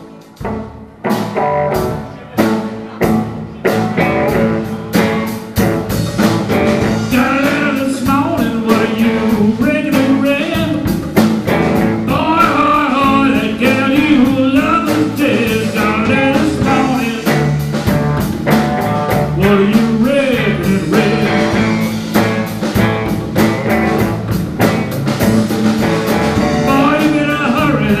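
Live blues band playing an instrumental intro on electric guitars, drum kit and hand drum. It starts with a few separate hits, the full band comes in about four seconds in, and a male voice starts singing right at the end.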